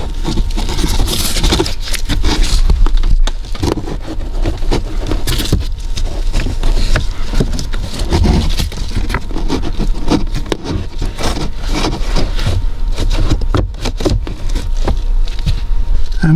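A pleated cabin filter being slid by hand up into its plastic housing: an irregular run of scraping and rustling with many small clicks and knocks as the filter frame rubs against the plastic, over a steady low hum.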